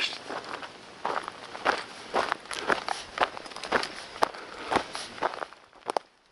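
A hiker's footsteps on the trail, a steady walking rhythm of about two steps a second, fading near the end.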